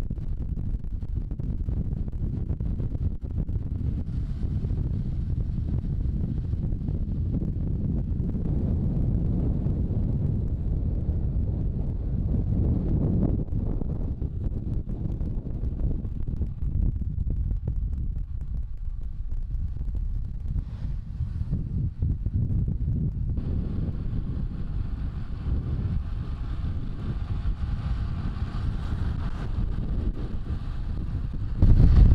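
Wind rushing over the camera microphone as a road bike descends at speed, a steady low rumble. About three-quarters of the way through, the sound changes, taking on a brighter hiss.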